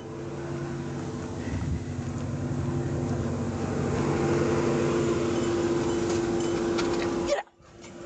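Police patrol car running at idle close by: a steady hum over a rushing noise that grows slightly louder, then cuts off abruptly near the end.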